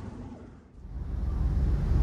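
Low, steady background rumble that dips almost to silence just before the middle, then swells back up and grows louder toward the end.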